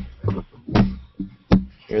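Elastic stretch cords of a wooden-dowel tensegrity tower plucked by hand near the microphone, three plucks about three-quarters of a second apart. Each gives a low twang that rings and fades, like a bass string. The cords are plucked to compare their pitch, which shows whether they are all at the same tension while the tower is tuned.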